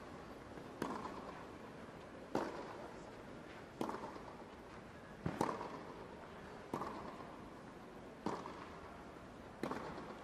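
Tennis ball struck by rackets in a long baseline rally on clay, seven shots about one and a half seconds apart, each with a short ring after it. A faint steady background hum of the arena lies underneath.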